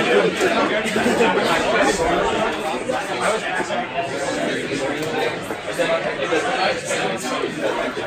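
Many people talking at once, a steady babble of voices with no single voice standing out.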